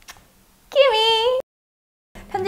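A woman's high, cutesy voice giving one short cat-like meow as playful aegyo, gliding up and then held.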